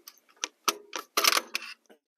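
A few sharp clicks and clacks from hands working the distributor on a Ford 289 V8 while the engine is off, the loudest cluster about a second in.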